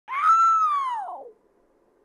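A single long, drawn-out meow ("meeerroooowww") that rises briefly and then slides down in pitch, dying away after just over a second.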